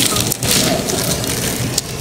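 Plastic bags crinkling and rustling as they are handled close to the microphone: a printed plastic shopping bag and a clear zip-lock bag pulled out of it, in a dense, irregular crackle.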